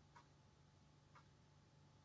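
Near silence: faint room tone with a short, sharp tick about once a second, twice in all.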